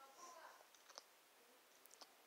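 Near silence with a faint murmured voice at the start, then a few faint sharp clicks, the clearest about halfway through.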